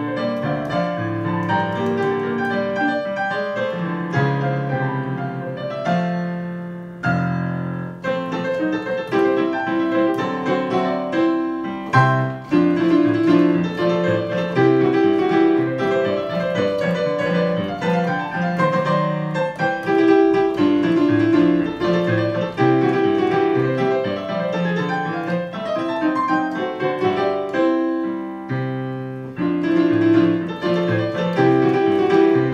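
Digital piano played solo in a continuous stream of notes and chords, with a short lull about seven seconds in before the playing picks up again.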